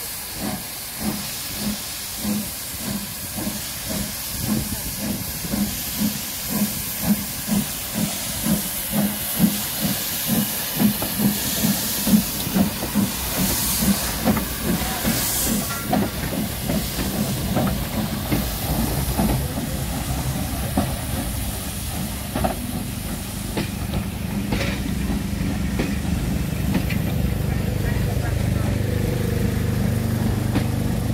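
Steam locomotive pulling away with a train, its exhaust chuffing in a steady beat that gradually quickens, with steam hissing. As the engine goes past, the chuffs give way to the continuous rumble of the coaches rolling by on the track.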